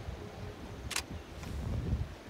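Wind rumbling on the microphone, with one short click or rustle about halfway through.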